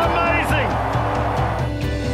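Rock music laid over football match audio: a commentator's excited voice and a stadium crowd cheering a goal. The match sound drops out about three-quarters of the way through, leaving the music.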